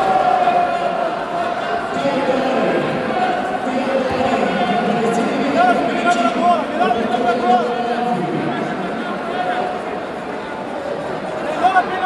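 Crowd hubbub in a large sports hall: many voices talking and shouting at once, with no single voice standing out.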